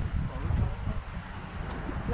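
Wind buffeting the camera microphone as a low, uneven rumble, with faint voices in the background.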